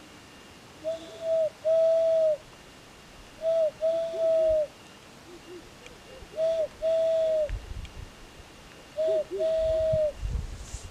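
Hand-whistle through cupped hands, blown as owl-like hoots: four pairs of a short note and a longer held note at one steady pitch, each dipping slightly as it ends, about every two and a half seconds.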